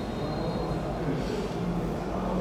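Steady low background rumble with no distinct events, with a faint high thin whine that stops about a second in.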